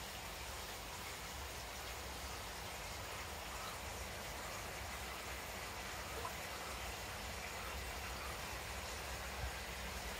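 Steady, even rush of running water in a koi pond, with a low rumble underneath.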